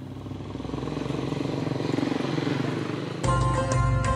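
A motorcycle engine running and growing louder, then cut off about three seconds in by music with a held drone and a regular beat.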